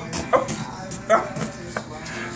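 Two short, sharp vocal sounds about a second apart, mixed with a few clicks and scuffling as a dog and a man play.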